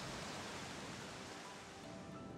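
Faint, steady rushing of a fast-flowing creek, easing slightly toward the end.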